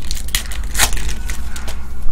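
Foil wrapper of a trading-card pack being torn open and crinkled by hand: a few sharp crackling rips, the loudest a little under a second in.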